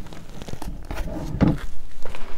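Rustling and a few light knocks as skeins of yarn and their packaging are handled and taken from a box.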